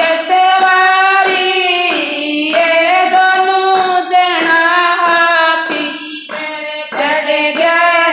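Women singing a Haryanvi devotional bhajan together in one melody, keeping time with regular hand claps.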